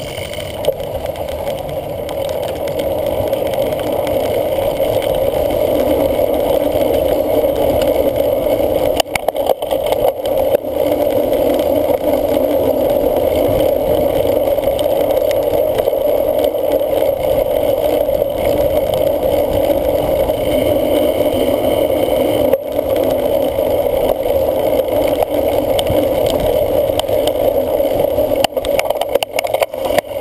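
Steady hum and rumble of a cyclocross bike riding over grass and dirt, heard through a camera mounted on its handlebars: knobby tyres rolling and the bike's running noise. A few brief knocks break it, about ten seconds in, a little past the middle, and near the end.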